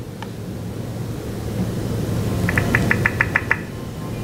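A computer's volume-change feedback blips: about eight short, evenly spaced high blips, some seven a second, as the volume is stepped up, over a steady low hum.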